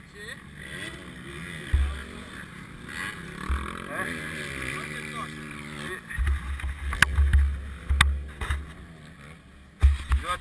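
Gusts of wind rumbling on the camera microphone, with a dirt-bike engine revving up and down in the distance through the middle. Two sharp knocks come about seven and eight seconds in.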